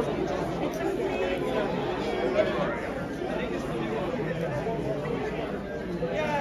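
Steady chatter of many people talking at once in a large hall, overlapping voices with no single voice standing out.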